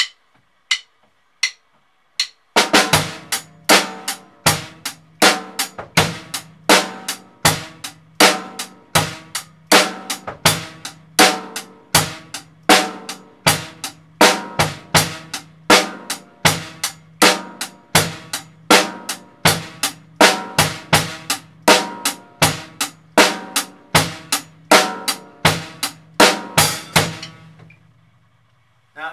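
Drum kit, with bass drum and snare, playing a steady eighth-note groove at 80 beats per minute. The groove comes in about two and a half seconds in, after a few light clicks, and stops shortly before the end.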